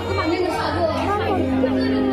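Voices speaking through stage loudspeakers over background music, with audience chatter underneath; a steady held note comes in about halfway through.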